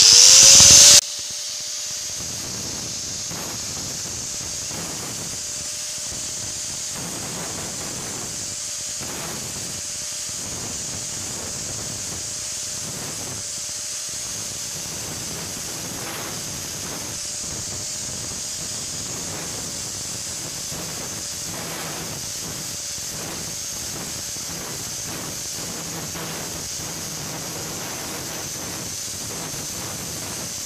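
Angle grinder running steadily after a loud first second, with many light strikes as its disc grinds the laminated steel rotor of a ceiling fan. The rotor is being ground down so that it no longer rubs on the stator.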